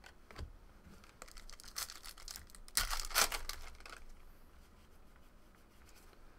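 Hands tearing open a trading-card pack wrapper, with crinkling of the wrapper and a louder rip about three seconds in.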